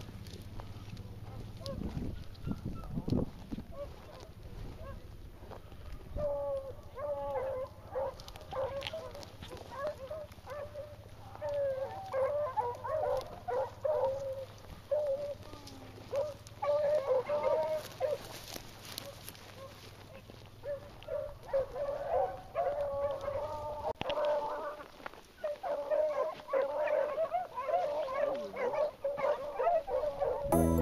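A pack of beagles baying as they run a rabbit's trail, many voices overlapping, starting about six seconds in.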